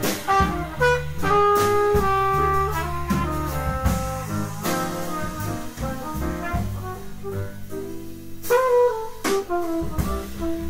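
Live jazz quartet playing: a trumpet carries held melody notes over piano, walking upright bass and drum kit, with frequent cymbal and drum strikes.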